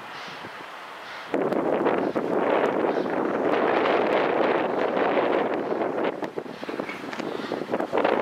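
Steam locomotive LMS 48151, a Stanier 8F 2-8-0, pulling away with its train out of sight, its steam and exhaust noise rising suddenly to a loud, steady rush about a second in and easing slightly near the end.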